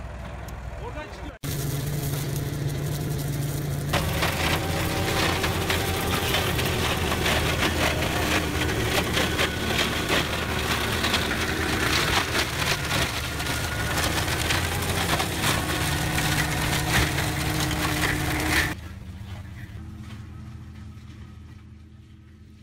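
Tractor-mounted Kadıoğlu branch shredder at work, its rotor breaking up pruned branches with a dense crackle of splintering wood over the steady drone of tractor and machine. It starts abruptly a second or so in, grows louder about four seconds in, and drops away to a quieter hum near the end.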